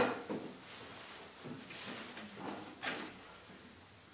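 A sudden loud knock or bang right at the start, followed by a few fainter knocks and handling sounds over room noise.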